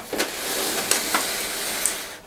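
Thin plastic seedling tray and its clear plastic lid being handled and slid on a table: a steady rustling, scraping noise with a few light plastic clicks.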